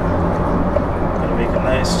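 Steady road and engine noise inside a car cruising at about 50 mph in fifth gear, with tyre rumble and a low engine hum. A man's voice starts right at the end.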